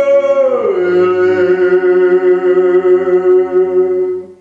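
Two men singing a Kuban Cossack folk song a cappella. They hold a long drawn-out note that slides down in pitch about half a second in and is then held steadily.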